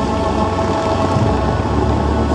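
Loud show music from the fountain's sound system, holding a deep sustained chord, over the steady hiss of the Dubai Fountain's water jets.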